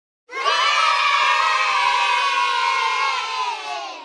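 A crowd of children cheering and shouting together. It starts abruptly about a third of a second in and fades away at the end.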